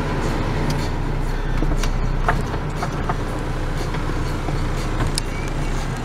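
Car's air conditioning blower running on high over the low, steady hum of the idling engine, heard from inside the cabin.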